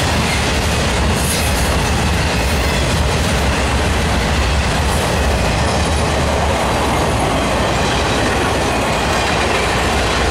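CSX intermodal freight train of trailers and containers on flatcars passing at speed: a steady, loud rush of steel wheels on rail.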